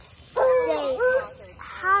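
A young boy's high-pitched voice making drawn-out, hesitant vocal sounds while he thinks of an answer, then starting a word near the end.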